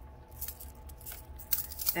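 Faint clicks and light rattles of a plastic tube of glass seed beads being handled and set down on a craft mat, over a low steady hum.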